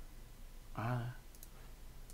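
A few faint, sharp computer mouse clicks about a second and a half in, just after a short murmur from a man's voice.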